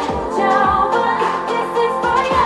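Female K-pop vocals singing over a dance-pop backing track with a steady beat, as a live stage performance.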